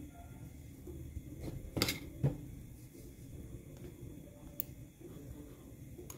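A few faint, sharp snips of scissors cutting a knotted strand of doll hair, the clearest about two seconds in.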